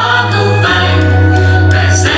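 A song with singing voices over a held bass line, the bass note changing about a third of the way in.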